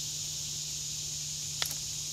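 Steady high-pitched chorus of insects in summer woodland, with a single sharp click about a second and a half in.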